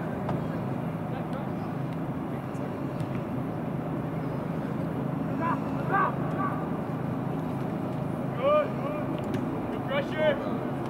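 Short shouts from voices on a soccer pitch during play, one burst about halfway through and another near the end, over a steady low rumble.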